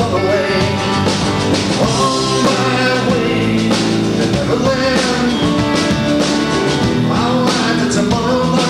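Live folk-rock band playing a song: a man sings over acoustic guitar, with bass and the rest of the band.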